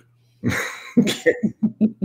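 A person laughing: a breathy burst, then a quick run of short chuckles.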